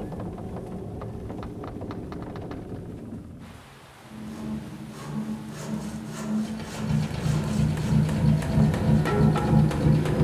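Film soundtrack: light clicks and knocks in the first few seconds, then a brief lull. After that, orchestral score with pulsing low notes and timpani swells and grows louder.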